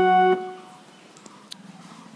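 Casio electronic keyboard holding one steady, sustained note, released about a third of a second in. Then a quiet stretch with a single faint click near the middle.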